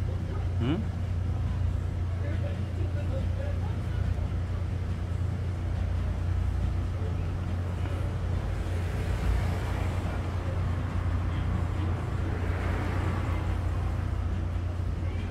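Steady low rumble of background noise, even and unbroken, like distant traffic or running machinery, with a man's short questioning 'eung?' near the start.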